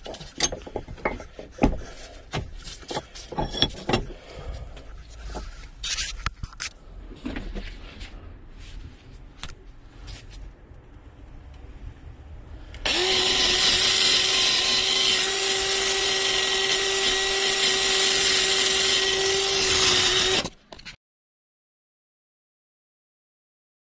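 Scattered knocks and clatter of tools being handled. Then, about thirteen seconds in, a power drill starts up and runs at a steady, even-pitched whine for about seven seconds before stopping.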